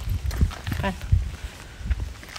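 Irregular low rumbles of wind and handling noise on a handheld phone's microphone, with a brief vocal murmur a little under a second in.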